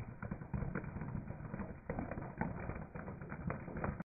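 Dry spaghetti and floral foam crackling and snapping under a slowly rolling car tyre: a string of irregular sharp cracks over a low rumble.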